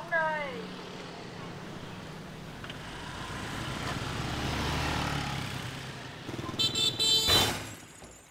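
Street traffic: a vehicle passes, rising to its loudest around the middle and fading, then a short horn toot and a brief sharp noise near the end.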